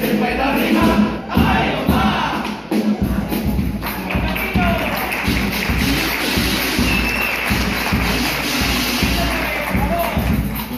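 A carnival chirigota group singing to guitars and a bass drum, giving way about three seconds in to a dense crowd noise of audience applause and cheering over continuing drum beats.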